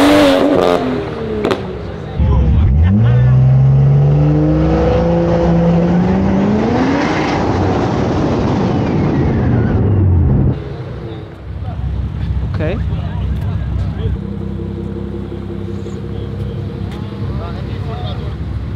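BMW engine at full throttle in a drag race, its pitch climbing in long rising sweeps as it pulls through the gears. About ten and a half seconds in the throttle lifts, and the sound drops to a lower, steady engine drone.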